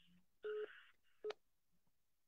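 Two faint electronic telephone beeps: a short steady tone, then a briefer blip of the same pitch about three quarters of a second later, as one call is ended and the next is put through on the phone line.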